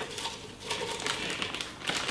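A plastic bag crinkling and lettuce leaves rustling in a run of irregular rustles as handfuls of washed greens are pushed into the bag.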